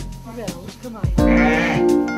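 A lamb bleating over background music: short calls early, then one long, wavering bleat from about a second in.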